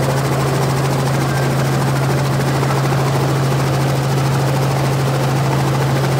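Helicopter running steadily: a loud, even rushing noise with a steady low hum beneath it.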